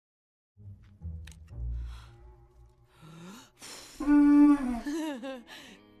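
Animated film soundtrack: a low rumble, then a loud pitched sound that holds and then wavers up and down, loudest about four seconds in.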